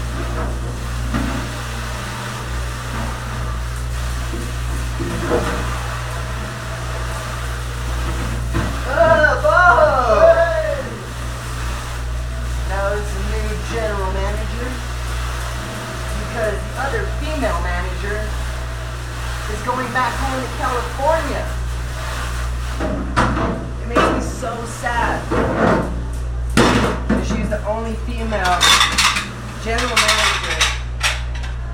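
Dishes and pans clattering and knocking against a stainless steel sink while being washed and stacked, the knocks coming thick and fast in the last several seconds. A steady low hum runs underneath.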